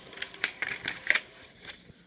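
Handling noise as a paper manual and small box are picked up and moved: light rustling with a few sharp clicks, the loudest about half a second and a second in.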